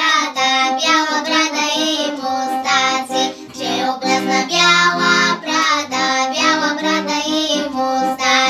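Young girls singing a Bulgarian folk song together over instrumental accompaniment, the voices carrying the melody throughout.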